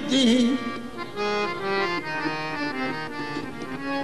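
Harmonium playing a qawwali melody between sung lines, its reedy notes stepping up and down in short held phrases. A singer's wavering held note trails off in the first half-second.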